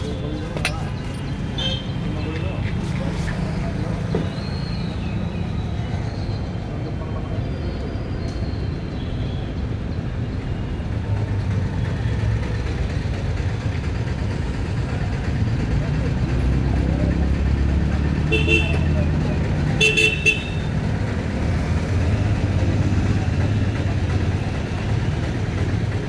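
Street traffic running steadily, with a vehicle horn tooting twice, about two-thirds of the way in.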